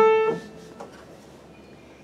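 A Heintzman upright piano's last note of a broken A major triad ringing and dying away within about half a second, then quiet.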